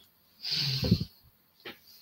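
A person's short, hissy breath close to a microphone, about half a second in, followed by a faint click.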